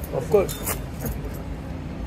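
A short burst of voice near the start, then a single sharp click or clink under a second in, over a steady low background rumble.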